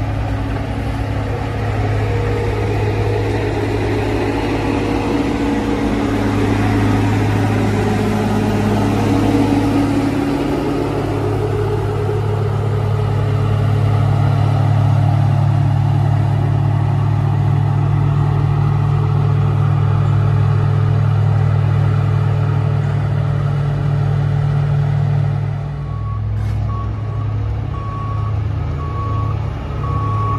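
Komatsu GD655 motor grader's diesel engine running steadily under load as it works material. Near the end the engine eases off and the grader's reversing alarm starts beeping repeatedly.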